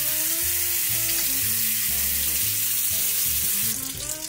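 Water running from a sink tap: a steady hiss that starts abruptly and stops shortly before the end, over background music.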